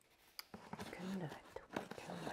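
Fingernails picking at packing tape on a cardboard box, making a few faint clicks and scratches, with a short hummed sound of effort from the woman about a second in.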